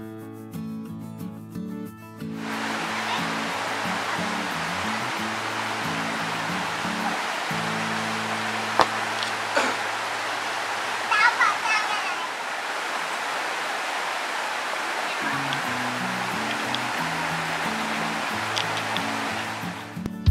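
Rushing water of a shallow rocky stream, an even steady noise that comes in about two seconds in, over background guitar music.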